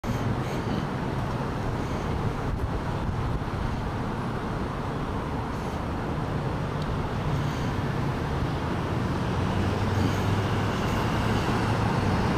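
Road traffic noise: a steady hum of cars on the street, growing louder from about nine seconds in as a vehicle approaches.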